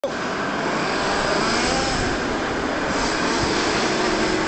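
Steady mechanical running noise of a radio-controlled model tank driving over sand.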